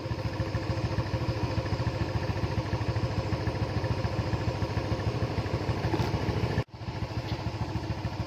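Four-stroke motorcycle engine idling steadily, with an even pulsing beat. The sound drops out for an instant about two-thirds of the way through.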